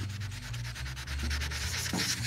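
A 1500-grit flat sanding pad is being rubbed over wet clear coat in a steady, fine, scratchy rasp. The pad is wet-sanding down the last of a dust nib so no raised spot is left.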